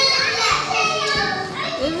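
Young children's voices at play, loud and high-pitched, calling out and chattering over one another.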